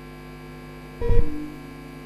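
Steady mains hum in the broadcast audio. About a second in comes a brief low thump with a short tone that fades within half a second.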